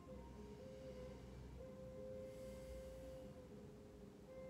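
Faint background music of soft, sustained held tones, one steady pitch taking over from another about a second and a half in.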